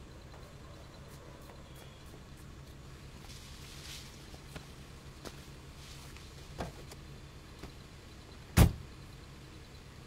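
A car door handle clicking open, then the door shut with one loud thump about two-thirds of the way in, over a low steady background and a few faint clicks.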